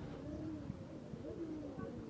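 A bird cooing low, in two short phrases.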